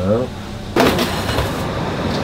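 Steady background noise of a commercial kitchen with a low hum, starting abruptly under a short knock about three quarters of a second in, after a voice trails off.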